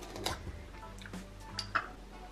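A glass jar of Biscoff spread being opened by hand and a metal spoon clinking and scraping in it: a few light clinks spaced through the moment, over faint background music.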